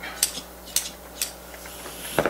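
Scissors trimming Dacron batting: three short, sharp metallic snips about half a second apart.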